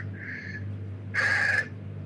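A man's breathy pause between phrases: a faint breath, then a louder, sharp intake of breath about a second in, over a steady low hum.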